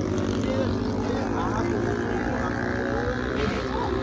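An engine running steadily, a low even drone, with faint voices of people talking in the background.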